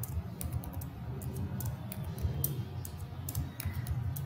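Computer keyboard typing: irregular, separate keystrokes, over a faint low hum.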